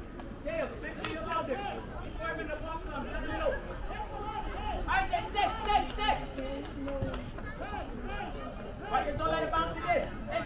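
Several people's voices talking and calling out, overlapping one another, with no clear words.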